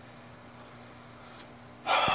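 A quiet pause with a faint steady hum. Near the end comes a man's sudden, noisy breath just before he speaks.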